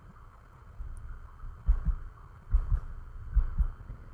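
Three low, dull thumps, evenly spaced a little under a second apart, starting about halfway through, over a faint steady hiss.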